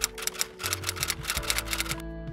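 Typewriter keystroke sound effect: rapid, even clicks about ten a second that stop near the end, over soft background music with sustained notes.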